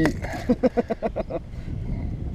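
A man laughing in a quick run of short bursts, then a low steady rumble for the last half second.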